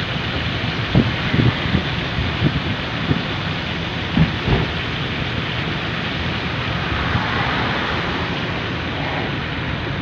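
Steady rushing noise from a vehicle driving on a rain-wet road: tyre spray and wind. Irregular low thumps come through in the first half.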